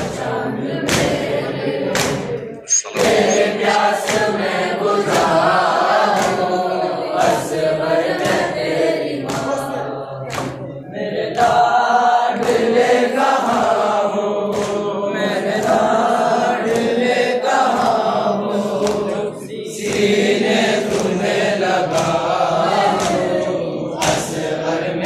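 A group of voices chanting an Urdu noha, a mourning lament, in unison, with regular sharp beats keeping time under the chant.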